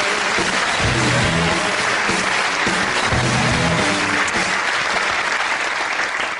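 Studio audience applauding steadily as a guest is welcomed on, over walk-on music with a low note figure repeating about every two seconds.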